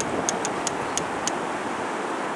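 A fishing reel on a surf rod clicking lightly and quickly, about six clicks a second, stopping a little after a second in, over the steady wash of surf and wind.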